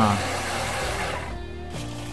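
Thermomix food processor blending lemonade, a steady whirring that stops about a second and a half in, with background music underneath.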